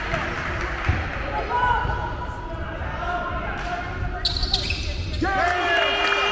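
Basketball bouncing on a hardwood court, with voices in a large sports hall. Near the end, high squeaks begin as players move on the court.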